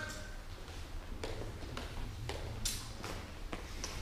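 Scattered short taps and scuffs of fencers' footsteps on a sports hall floor, about six at irregular intervals, over a steady low hum of the hall.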